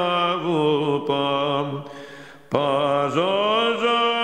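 A solo male voice chants the parallage (the note-name syllables) of a fourth-mode Byzantine hymn in long, ornamented notes over a steady held drone. The line breaks off briefly about two seconds in and resumes about half a second later.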